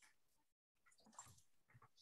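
Near silence: faint room tone over a video call, with a few very faint, brief small sounds in the second half.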